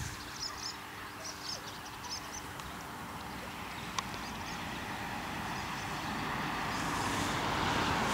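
Faint outdoor ambience: small high chirps from birds during the first few seconds, a single sharp click about four seconds in, then a rustling noise that swells over the last few seconds.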